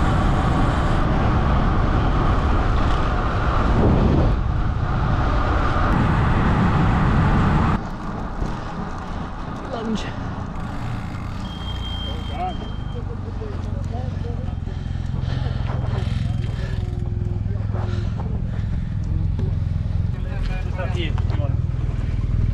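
Wind rushing over a camera microphone on a moving bicycle, loud with a heavy low rumble, then cutting off suddenly about eight seconds in to a quieter, steadier rumble.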